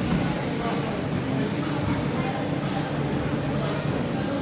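Indistinct background voices and general hubbub in a large indoor hall, with no clear single sound standing out.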